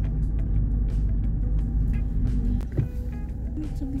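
Steady low engine and road rumble inside the cabin of a moving car.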